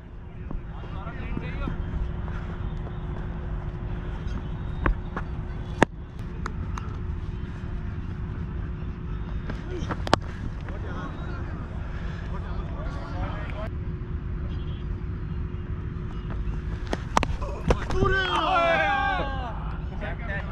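Cricket-field ambience picked up by a helmet-mounted action camera: a steady low rumble on the microphone, players calling out in the distance, and a few sharp knocks. A louder shout comes near the end.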